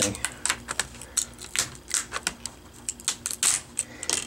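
Plastic screen bezel of a Lenovo N22 Chromebook being pried off the screen assembly by hand: a run of irregular small clicks and snaps as its clips let go.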